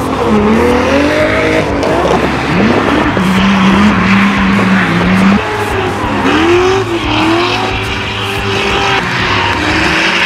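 Drift cars' engines revving hard while sliding sideways, pitch swinging up and down with the throttle. The revs are held steady for a couple of seconds mid-way, then drop suddenly and climb again, over the hiss and squeal of tyres spinning on the track.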